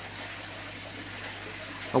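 Steady trickle of running water, as from a garden koi pond's waterfall or filter return, with a low steady hum underneath.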